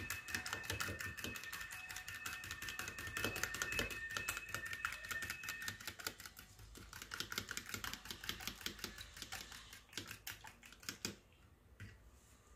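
Two eggs being beaten with a fork in a small plastic bowl: the fork clicks rapidly and evenly against the bowl for about eleven seconds, thins out, and then stops.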